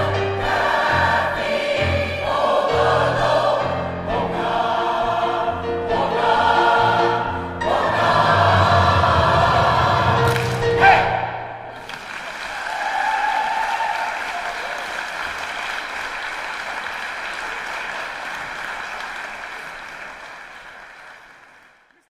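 A choir sings the end of an up-tempo polka with instrumental accompaniment and a stepping bass line. It closes on a sharp final accent about eleven seconds in, followed by audience applause that fades out.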